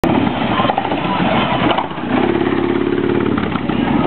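Motorcycle engine running amid a crowd, its steady note standing out clearly for about a second midway, with people talking around it.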